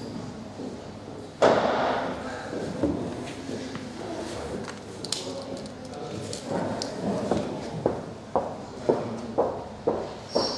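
A sudden loud thump about a second and a half in, then, near the end, a person's footsteps on a hard floor at about two steps a second.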